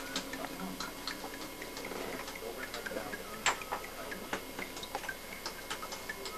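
Light, irregular ticking and clicking, about two or three sharp clicks a second.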